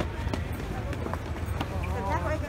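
Hurried footsteps and shuffling of a jostling crowd on paving, irregular scuffs and knocks over a steady low rumble, with indistinct voices.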